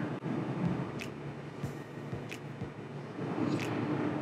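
The boat's inboard engines idling, a steady low hum, with a few light clicks about a second apart.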